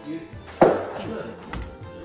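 A single sharp clunk a little over half a second in, with a short ringing tail, as a stainless-steel dishwasher door is shut, over quiet background music.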